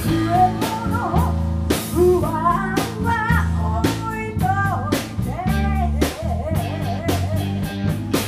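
Live rock band playing: electric guitar, bass guitar and drum kit, with a bending lead melody line from the front man at the microphone over them.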